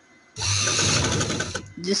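Sewing machine running a short burst of stitching across folded pleats of fabric, starting about a third of a second in and stopping after about a second.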